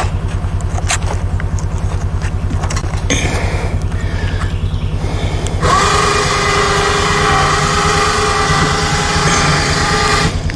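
A Mule utility vehicle's engine idling with an even, steady pulse. A bit past halfway, a steady higher-pitched whine joins it and holds on.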